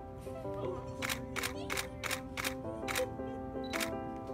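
Soft background music of held notes, with a camera shutter clicking about seven times, quickly at first from about a second in and once more near the end.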